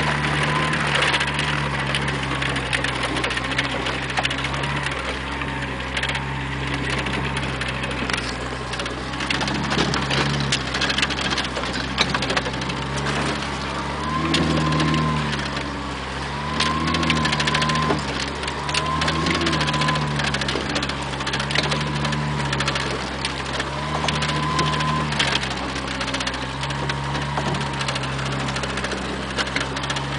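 Jeep's engine pulling over a rough dirt track, its revs rising and easing every couple of seconds as the throttle is worked, with the body and loose parts rattling and knocking over the bumps.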